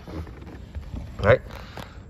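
Low, uneven rumbling and rustling handling noise as a person climbs out of a car's rear seat holding the phone, with one short spoken word about a second in.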